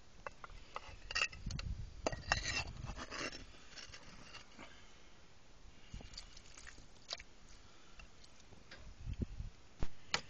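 Hands placing and shifting pieces of broken clay tile and soil around a drain pipe joint: irregular light clinks and scrapes, busiest in the first few seconds, with a few dull thumps near the end.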